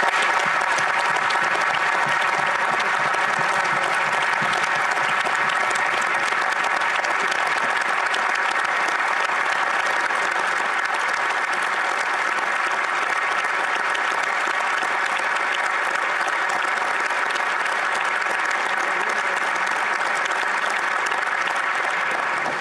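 A chamber full of members of parliament giving a standing ovation: many people clapping steadily and without a break.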